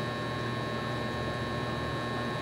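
Steady background hum and hiss with a few constant high whining tones, unchanging throughout, with no distinct event.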